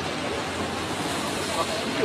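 Steady rushing noise of a jet airliner's engines on landing approach, with faint voices under it.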